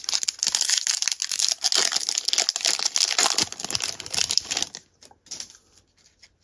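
Crackling of a trading-card pack wrapper as it is torn open and crumpled, lasting about four and a half seconds, then stopping. A few light clicks follow near the end.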